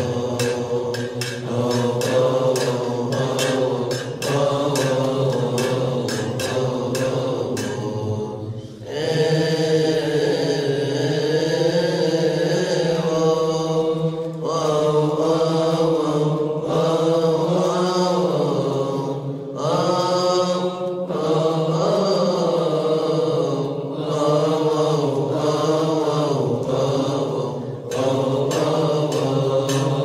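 Coptic liturgical chant sung by monks: long, wavering melismatic lines over a steady low held note. Regular sharp clicks, about two a second, keep time through much of it.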